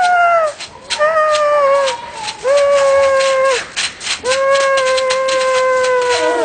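A high human voice making long wordless "oooo" wails, four in a row of about a second each, the last held longest, as if mock-frightened. Short scratchy rubbing clicks fill the gaps between the wails.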